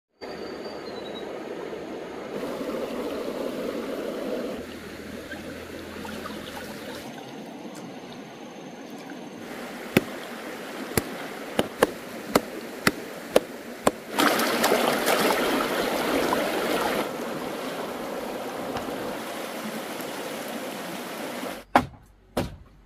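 Shallow stream water trickling and running over stones, shifting in level several times. Around the middle comes a run of sharp knocks, followed by a few seconds of louder rushing water, and a single sharp chop lands just at the end.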